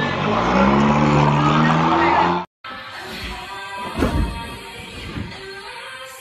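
Loud voices for the first couple of seconds. After a sudden brief dropout, music takes over.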